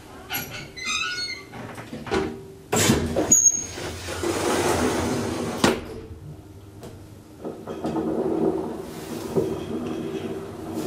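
Elevator sliding doors closing with squeaks, clicks and a knock, then a steadier hum from about seven seconds in as the elevator car runs.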